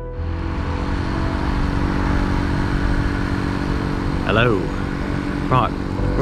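An electric air pump running with a steady drone, inflating inflatable kayaks.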